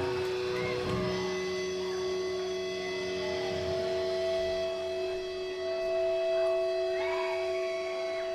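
Guitar amplifier feedback left ringing after the song: several steady tones held at once, one shifting up in pitch partway through.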